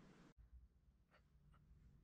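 Near silence, broken by two faint, short scrapes of fingers working modelling clay about a second in.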